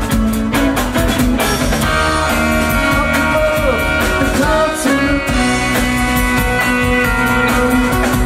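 Live rock band playing an instrumental passage: electric guitar over bass guitar and a drum kit, with a steady beat.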